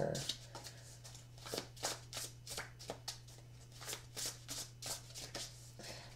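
A deck of tarot cards being shuffled by hand: a run of irregular soft flicks and slaps of the cards. A steady low hum runs underneath.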